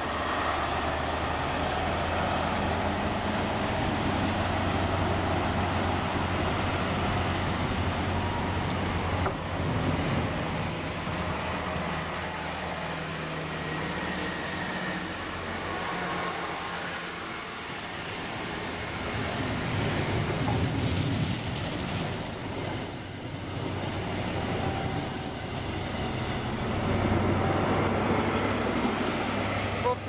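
InterCity 125 High Speed Train pulling away: the diesel engine of the leading Class 43 power car drones as it passes, then the Mark 3 coaches go by with a quieter rumble of wheels on rail, and the trailing power car's engine comes up loud again near the end.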